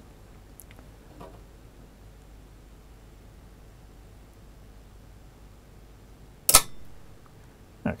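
Siemens Brothers voltage-operated earth leakage circuit breaker tripping: one sharp mechanical snap about six and a half seconds in, as its trip coil, fed at about six volts DC, pulls in the bar and the handle springs to off. Before it there is only faint room tone.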